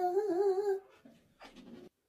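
A woman's voice drawing out a high, wavering, whine-like note for under a second, then a short breathy sound before the audio cuts off abruptly.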